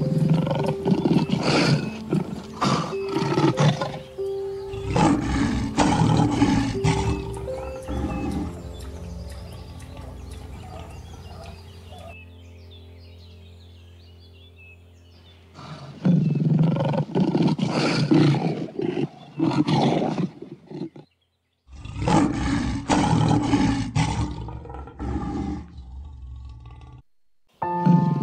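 Lions roaring in repeated loud bouts: two series of roars, a lull of several seconds, then two more series.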